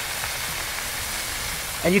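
Ground-beef smash burger patties sizzling steadily on a flat-top griddle turned up to high heat, one held flat under a burger press. The heat is high to sear a crust on the meat.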